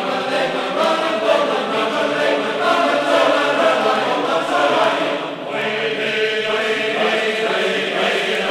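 Music: a group of voices singing together in a choir.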